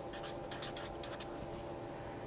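Felt-tip marker writing on paper: a quick run of faint short scratching strokes that stop a little past halfway.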